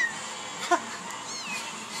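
Young kitten mewing in short, high-pitched cries, the loudest a little past a third of the way in.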